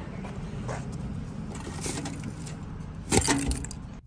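Steady low rumble of traffic and running engines outdoors, with a few light handling clicks, then one short, loud, sharp clatter a little over three seconds in.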